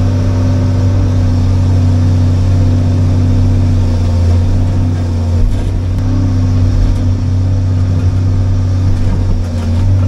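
Diesel engine of a John Deere excavator running steadily, heard from inside the cab as the boom and bucket are worked. Its pitch rises slightly about a second in and again around four to five seconds.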